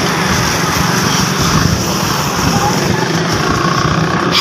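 Steady street traffic noise heard from a moving bicycle, with motorcycles running close by giving a continuous low engine rumble.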